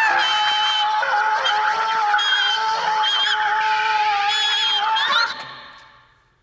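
Closing held notes of a post-punk track: honking, sustained tones with swooping, warbling overtones over a steady lower drone. About five seconds in the music stops and its tail dies away to near silence.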